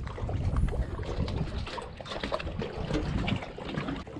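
Light water trickling and splashing as a magnet-fishing rope is drawn slowly in through the water, with faint small ticks over a low, steady rumble.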